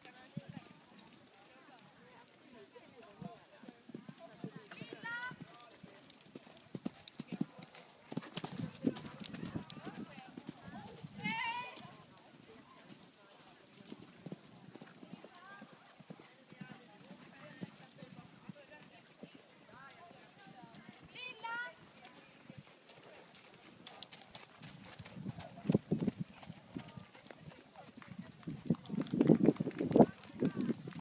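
Hoofbeats of a horse cantering over a sand arena, as irregular dull knocks, with people talking.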